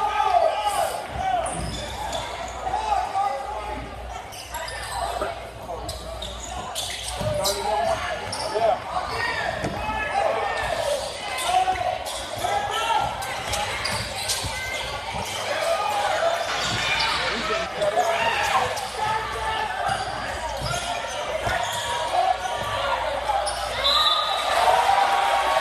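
Basketball dribbled on a hardwood gym floor, bouncing repeatedly, with short sharp knocks scattered through. Voices of spectators and players chatter and call out throughout, echoing in the gymnasium.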